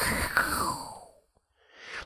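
A man's long, breathy exhale into a close microphone, fading out about a second in; then a brief silence and a short intake of breath near the end.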